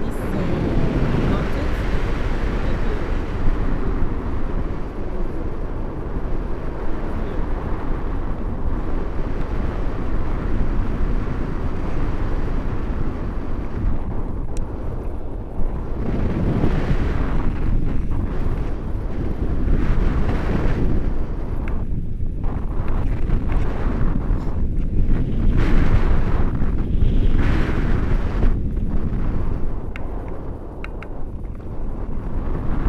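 Wind rushing over a selfie-stick camera's microphone in paraglider flight, a steady loud noise that swells and eases every few seconds.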